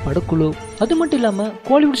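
A man's voiceover narration over background music. A faint, rapidly repeating high-pitched electronic tone sounds briefly during the first second and a half.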